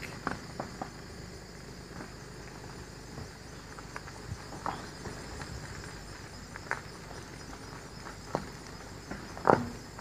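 Steady chorus of insects buzzing in summer woodland. Over it come irregular soft crunches and clicks, the loudest just before the end.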